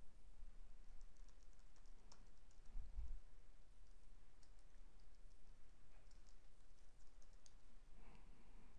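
Faint typing on a computer keyboard: two quick runs of key clicks, one about a second in and a longer one from the middle to near the end, as an email address is typed. A soft low thump comes about three seconds in.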